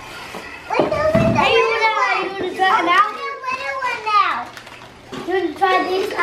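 Young children talking in high-pitched voices, with a short lull a little past the middle.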